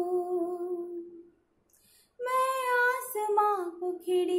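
A woman singing a Hindi lullaby unaccompanied. A long held note fades out about a second in, and after a short pause for breath she starts the next phrase.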